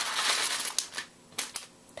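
Craft supplies being handled while buttons are picked out: about a second of rustling, then three small sharp clicks.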